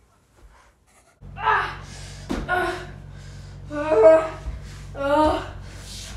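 A boy's short wordless vocal sounds, four brief voiced bursts about a second apart, starting about a second in after a near-silent moment. A steady low hum comes in with them, and there is a sharp click between the first two.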